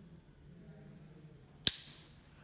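A single sharp plastic click near the end as a white plastic TRV adapter snaps onto a Giacomini radiator valve, showing it has seated.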